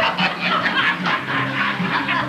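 Dance music playing from a record, loud, with the voices of a dancing crowd mixed in over it.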